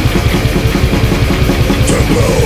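Old-school death metal played by a full band: distorted guitars and bass over a fast, even drumbeat, loud and unbroken.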